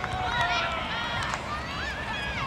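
Several young girls' voices shouting and calling over one another, high-pitched and overlapping, with no clear words.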